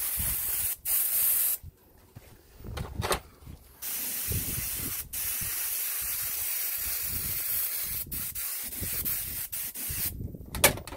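Iwata airbrush spraying paint: a steady high hiss of compressed air that stops for about two seconds near the start, then resumes with a few short breaks as the trigger is let off and pressed again.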